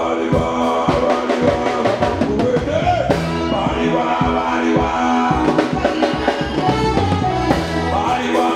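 Live band playing with a steady beat: trumpet, electric bass and drum kit, with a singing voice over them.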